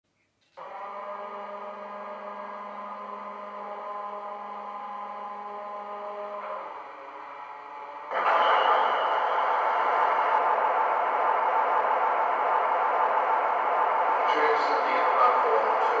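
Model diesel locomotive sound from a LokSound 5 DCC sound decoder with a Howes Blue Pullman sound file, played through small megabass speakers in the model. A steady hum for about six seconds, then from about eight seconds in a much louder, noisier engine-running sound that holds steady.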